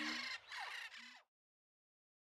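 Faint fading tail of a song video's soundtrack: a few short falling calls and brief low hums die away, then cut to silence just over a second in.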